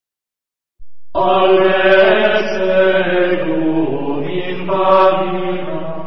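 Silence for about the first second, then chanted vocal music begins: a voice singing a mantra-like chant over a steady low tone.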